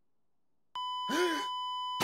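Censor bleep: a steady high beep starts just under a second in and runs on. Under it a short groaning voice rises and falls in pitch, the answer being bleeped out.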